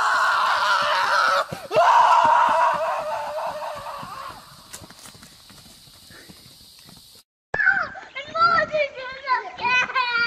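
A horse whinnying twice: a loud call in the first second or so, then a longer one that fades away over a few seconds. Near the end, after a brief dropout, a child's voice and other voices.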